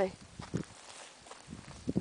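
A few soft footsteps of a person walking over dry mulch and straw-covered soil, in two small groups about a second apart.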